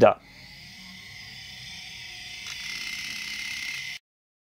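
An outro sound effect: a synthesized rising swell of hiss with a steady high tone, growing louder over about four seconds and cutting off suddenly at the end.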